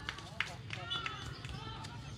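Footballers' distant shouts and calls across the pitch, with one sharp knock about half a second in, over a steady low rumble.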